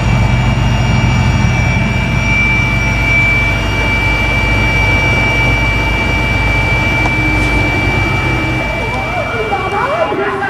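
Helicopter cabin noise as the helicopter comes in to land: a loud, steady drone of engine and rotors with a constant high whine. Voices come in near the end.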